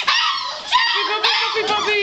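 A litter of six-week-old fox red Labrador Retriever puppies whining and yipping, many short high-pitched cries overlapping one another. The owner takes the crying as the pups wanting to be fed.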